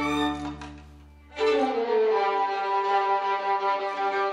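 A student string orchestra of violins, cellos and double bass plays a held chord that stops about half a second in. After a brief pause the strings come back in with a new phrase at about a second and a half, without the low bass notes.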